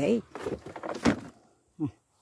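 A flexible black plastic plant pot being handled and pulled off a dense, root-bound mass of roots, with scraping and a sharp knock about a second in.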